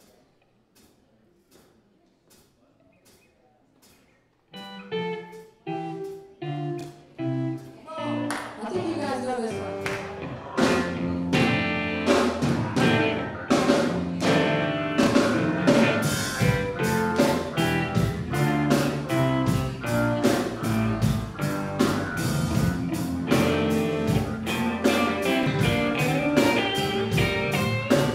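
A live soul-funk band starts up. After faint, evenly spaced ticking, a few separate plucked guitar and bass notes enter about four seconds in. The rest of the band builds in, and by about ten seconds the full band with drum kit is playing a steady groove.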